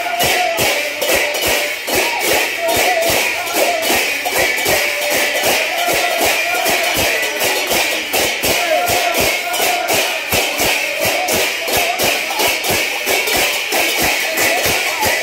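Brass hand cymbals clashing in a fast, even rhythm, with a wavering melody line above them.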